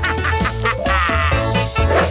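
Upbeat background music with a steady bass beat, with a short warbling, pitched comic-sounding effect over it in the middle.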